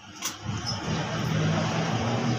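A loud, steady engine-like drone with a hiss over it, starting about half a second in after a short click.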